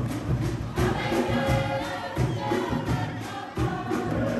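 A group of voices singing together over a fast, steady drumbeat.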